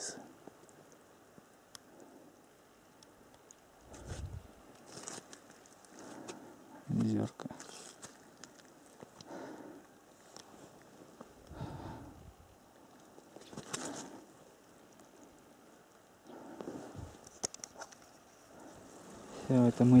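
Quiet open-air ambience broken every second or two by soft bumps and rustles, with a couple of deep thumps of wind or handling on the microphone. A short low voice sound comes about seven seconds in.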